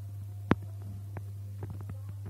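Steady low electrical hum with a sharp click about half a second in and a few fainter clicks later.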